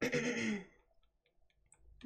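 A person coughs once, briefly, in the first half-second, followed by a few faint clicks.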